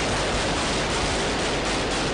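Loud, steady rushing noise on the field soundtrack of combat footage, with no separate shots or voices standing out of it.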